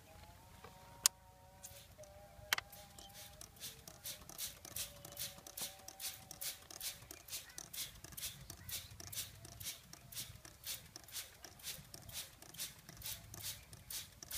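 Plastic hand-held trigger sprayer pumped over and over, each squeeze giving a short hiss of mist, about three a second. Two sharp clicks come first.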